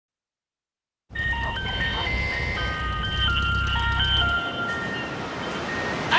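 An ice-cream van chime tune: a simple melody of clear single notes starting about a second in, over a low rumble that stops about four and a half seconds in.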